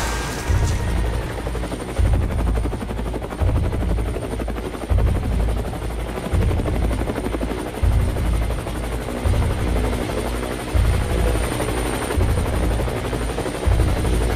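Helicopter rotor chopping steadily, as of a police helicopter overhead, over a slow music beat with a heavy bass pulse about every one and a half seconds.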